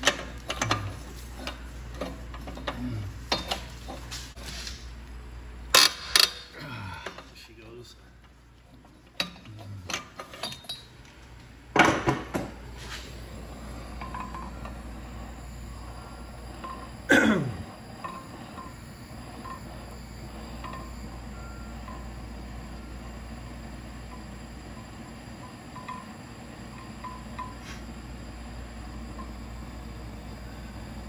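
Metal tools clinking and knocking against the exhaust manifold studs, then the steady hiss of a MAP gas torch flame heating a seized exhaust manifold stud so it can be removed without snapping.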